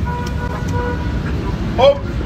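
Steady low outdoor rumble, like wind on a phone microphone or distant traffic, with a man's loud shout of "Hop!" near the end.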